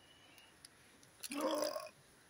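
A short, low, throaty vocal sound from a man, about half a second long, coming about a second and a quarter in after a near-silent start.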